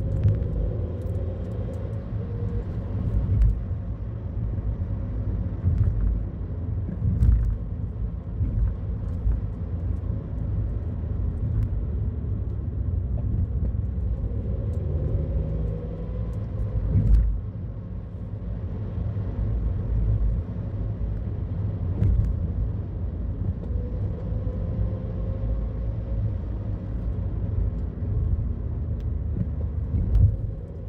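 Car cabin noise while driving slowly up a narrow mountain road: a steady low rumble of engine and tyres, with scattered short knocks and bumps, the loudest about 17 seconds in.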